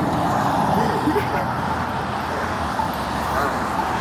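Steady road traffic noise, a continuous rush of passing cars with no breaks.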